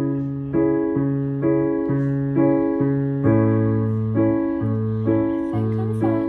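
Digital piano played without voice: even chords struck about twice a second over held bass notes that change every second or so.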